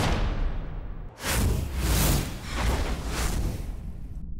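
Broadcast graphics stinger: a sudden booming hit with a whoosh that fades, then about a second in a run of about four pulsing whooshes over heavy bass booms.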